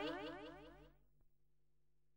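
The last sound of a Tamil film song dying away in a repeating echo tail of sweeping tones, gone within the first second. After that, near silence with a faint hum.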